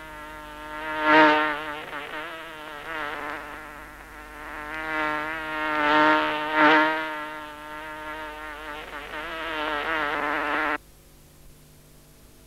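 A housefly buzzing with a wavering pitch, growing louder and softer as it circles close by and moves away. The buzz stops abruptly near the end.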